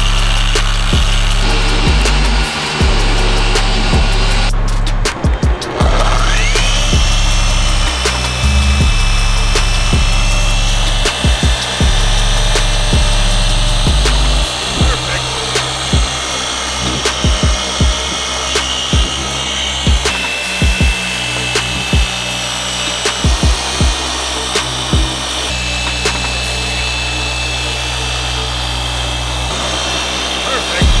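Dual-action car polisher running with a microfiber pad, making the first cutting pass on freshly wet-sanded black paint; its motor whine rises and settles about six seconds in, then holds steady. Background music with a heavy bass line plays throughout.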